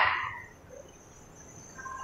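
A voice trailing off with a falling pitch in the first half second, then a quiet room with a faint, steady high-pitched whine.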